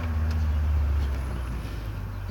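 A low, steady motor rumble with a held hum, swelling a little around the middle.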